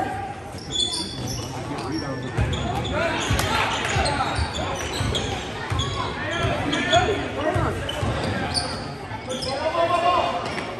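Basketball dribbling on a hardwood gym floor, with sneakers squeaking and spectators talking and calling out, all echoing in the gym.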